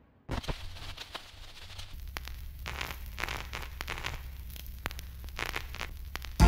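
Vinyl record surface noise, a stylus running in the groove with a steady hiss full of crackles and small pops. A low hum joins about two seconds in.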